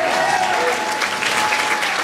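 Audience applauding and cheering, with a few voices shouting over the clapping right after the song's last chord.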